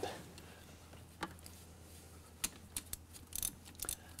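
Faint clicks of a ratcheting box-end wrench turning a carbon reamer by hand in a diesel glow plug bore, the reamer now turning freely near full depth: a single click about a second in, another about halfway, then a quicker run of clicks near the end.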